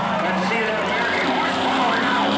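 Race car engines running at steady revs down the straight, with people's voices over them.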